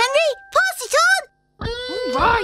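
Cartoon soundtrack music: electric-guitar-like notes bending up and down in arcs, stopping dead for a moment just past halfway, then starting again with held notes.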